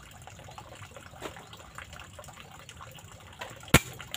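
A single sharp shot from an air rifle firing a 13.43-grain slug, about three and three-quarter seconds in, over faint steady background noise.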